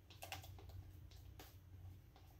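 A handful of faint clicks and short scrapes from a metal palette knife working thick wet acrylic paint on paper, over a low steady hum.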